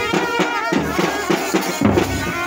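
Marching band playing: a drum beating about twice a second under a wavering melody from wind instruments.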